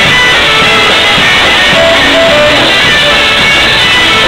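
A live polka band playing loudly: accordion, trumpet and saxophone over drums and electric guitar.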